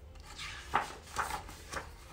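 Paper pages of a picture book being turned by hand: a few brief rustles and flaps of the page.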